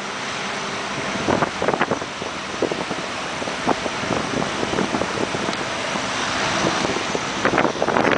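Wind rushing over the microphone in uneven gusts, with surf washing on a reef-lined beach behind it.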